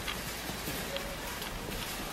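Footsteps of people walking on a boardwalk path: faint, irregular steps over a steady background hiss.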